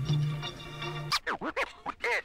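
Music: a held note of the sampled song fades out, then a DJ scratches on a turntable from about halfway through, four or five quick sweeps up and down in pitch, leading into a hip-hop track.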